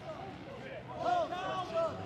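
Faint, distant shouts of footballers calling to each other on the pitch, the words unclear, over low open-air ground noise. The calls are loudest from about halfway in.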